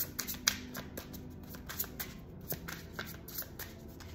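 A tarot deck being shuffled by hand to draw a clarifier card: a quick run of light card clicks that thins out after the first second or so.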